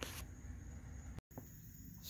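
Faint background ambience with a low steady rumble, broken by a moment of dead silence about a second in where the recording cuts.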